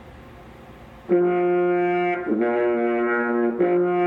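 Trombone playing three held notes, each about a second long, starting about a second in: F, down to the lower B flat, then F again. It is a call-and-response pattern for a beginner to copy back.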